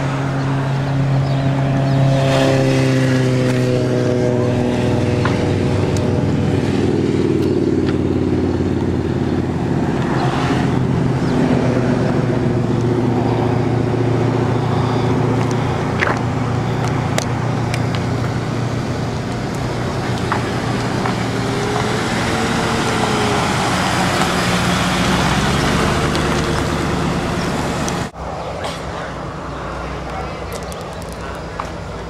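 Car engines running close by with a steady low drone. One engine's pitch falls away a couple of seconds in, and a brief rev rises and falls later. The sound drops off sharply near the end.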